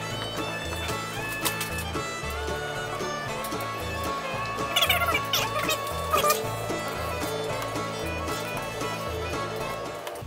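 Background music: held tones over a slow, steady bass beat.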